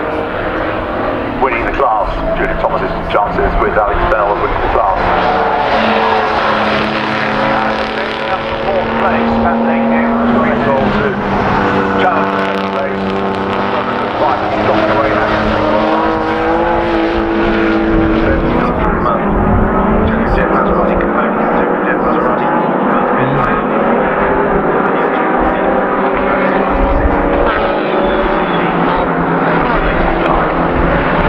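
Historic racing car engines running hard on the circuit, several cars passing one after another, their engine pitch rising and falling as they go by.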